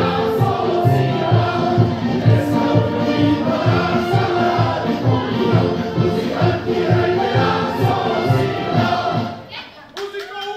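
A group singing a Czech folk song in chorus over folk music with a steady bass beat, about three beats a second; the song ends near the end.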